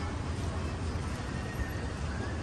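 Steady street background noise: a low traffic rumble and general hum, with no distinct event.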